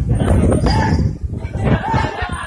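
Men shouting in the street, two short raised calls over a heavy low rumble on the phone microphone.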